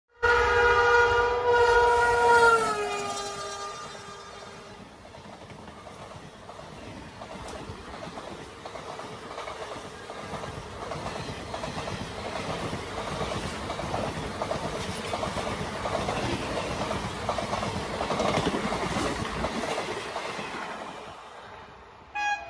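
Indian Railways electric locomotive's horn sounding loudly for about three seconds, dropping in pitch about two and a half seconds in, then the express coaches rolling past with a steady wheel clatter over the rail joints that swells and then fades near the end.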